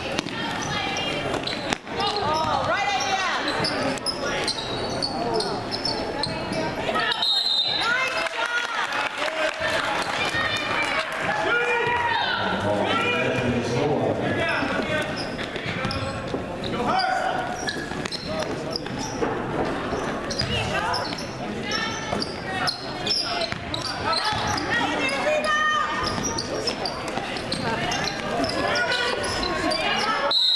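A basketball being dribbled and bouncing on a gym's hardwood floor, amid voices of players and spectators calling out during play.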